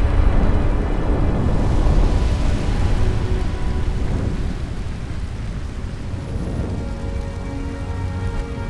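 Deep rumbling noise over faint sustained music tones, loudest in the first couple of seconds and then slowly fading.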